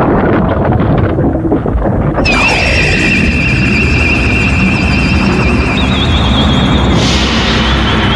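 Anime sound effects of the ground splitting open and a burst of energy: a deep rumble, with a high warbling tone over it from about two seconds in. The tone steps up higher near six seconds, and a fresh burst of noise comes near the end.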